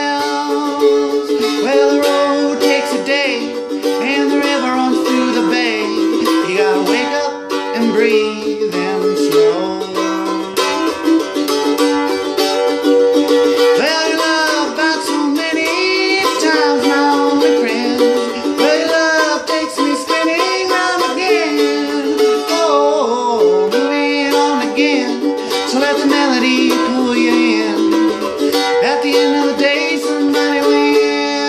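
Mandolin strummed steadily in an acoustic folk song, with a man's voice singing along with vibrato.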